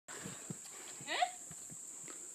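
A single short call rising in pitch about a second in, over a few faint thumps and a faint steady high-pitched whine.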